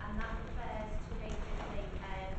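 A person speaking at a distance in a meeting room, over a steady low rumble with irregular knocking and crackle on the recording.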